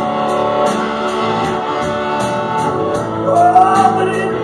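A live rock band playing: electric guitars and bass over a drum kit keeping a steady cymbal beat, with a voice singing, one note sliding up about three seconds in.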